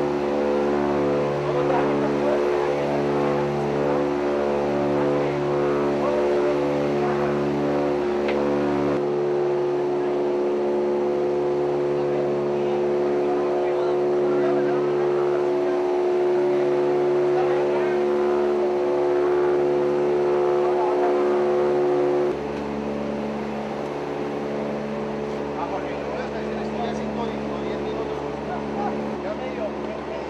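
Helicopter engine and rotor drone heard inside the cabin. It is a steady, loud stack of tones with a slow, regular throb beneath it. The level drops abruptly about 22 seconds in.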